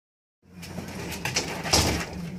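Soft rustling and a few light clicks over a low hum, with a louder rustle near the end.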